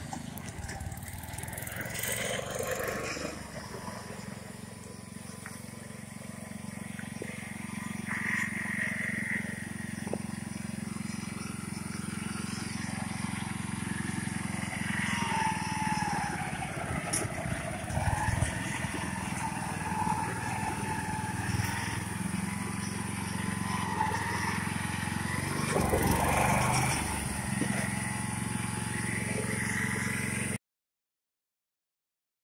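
Small garden tractor engine running steadily while towing another garden tractor on a strap over gravel.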